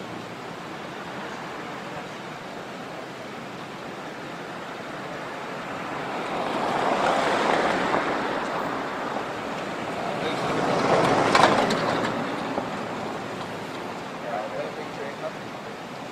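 Road traffic passing: two vehicles go by, each a swell of tyre and engine noise that rises and falls, the second louder, over a steady background hiss.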